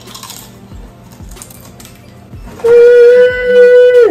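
A loud, steady horn-like tone, a sound effect laid over background music with a steady beat; it comes in about two and a half seconds in, holds one pitch, and drops sharply in pitch as it ends.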